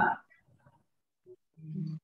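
Fragments of a person's voice over a video call. The loud end of a spoken word comes right at the start, then a short low murmur near the end.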